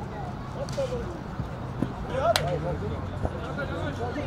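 Men's voices calling out on an outdoor football pitch, with one sharp knock a little over two seconds in.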